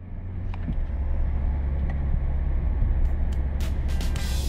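Steady low drone of a car's engine and road noise heard from inside the cabin while driving, fading in at the start. A few light clicks come near the end.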